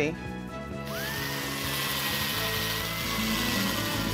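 Electric drill spinning up about a second in, then running steadily with an abrasive ball scouring out the inside of a dried gourd.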